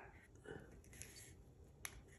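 Near silence: room tone, with a few faint soft sounds and one sharp click near the end.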